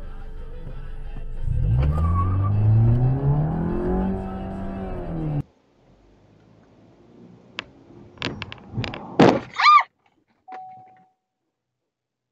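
A vehicle engine revs, rising in pitch over a few seconds and then falling, and cuts off abruptly about five seconds in. After a short quiet stretch come a few sharp knocks and then two loud thuds close together near ten seconds, the second with a brief squeal, followed by a short tone.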